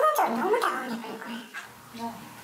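A woman speaking in an electronically disguised, pitch-altered voice, the kind used to hide an interviewee's identity, which gives it an odd, whimpering quality.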